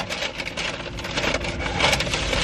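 Paper fast-food bag and wrapper rustling and crinkling as food is pulled out and handled, uneven, with a louder crinkle near the end.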